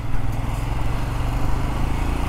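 Royal Enfield Scram 411's 411 cc single-cylinder engine running steadily while under way. It picks up in loudness right at the start and then holds an even note.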